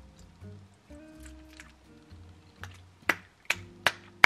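Soft background music playing, then near the end three sharp hand claps in quick succession.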